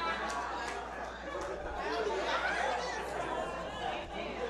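Congregation chatter: several voices talking and responding at once at a low level, with a few short clicks among them.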